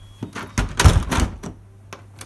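UPVC door handle and newly fitted multipoint lock mechanism being worked: a run of sharp mechanical clicks and clunks, the heaviest clunk about a second in. The replacement lock is operating properly.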